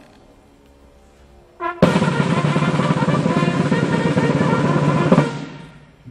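Military band snare drum roll: after a short opening stroke it rolls evenly and loudly for about three and a half seconds, then stops sharply and its ring dies away.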